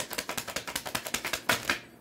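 A deck of tarot cards being shuffled: a rapid run of paper card clicks, with a louder slap about one and a half seconds in, stopping just before the end.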